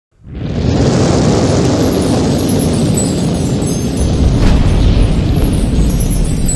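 Cinematic intro sound effect: a loud, dense rumbling noise that swells in within the first half-second and deepens in the bass about four seconds in.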